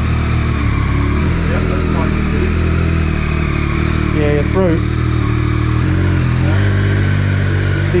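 Motorcycle engine running at low revs as the bike is ridden slowly away, its note shifting slightly about a second in and again near six seconds. A short voice sound about halfway through.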